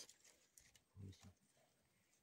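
Near silence, with one brief faint low sound about a second in.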